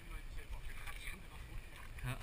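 Low wind rumble on a helmet-mounted action camera's microphone, with faint scraps of voices.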